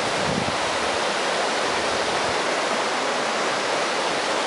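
Water pouring over a river weir: a steady, even rush of falling water.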